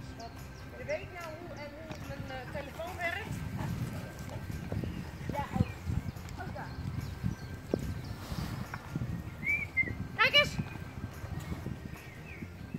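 Irregular soft thuds of footsteps on grass, with a few short wavering pitched cries, one near the start and one near the end.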